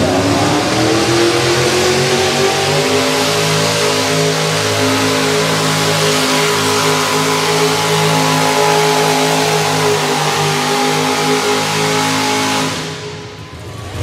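Econo Rod class pulling tractor's engine at full throttle pulling the sled. Its pitch climbs over the first few seconds as it launches, then holds high and loud until the engine is cut off near the end of the pull.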